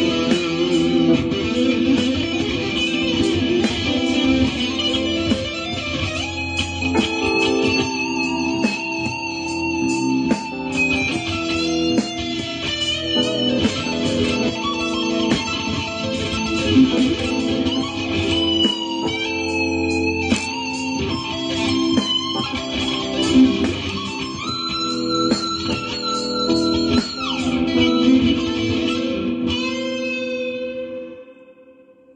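Electric guitar improvising lead lines, with quick runs and bent notes that glide in pitch, over a backing track of sustained chords.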